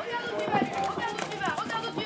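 Hoofbeats of a pony cantering on a sand arena, under people talking nearby.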